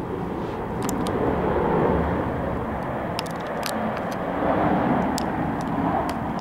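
Steady low rumbling noise that swells twice, with a few faint clicks over it.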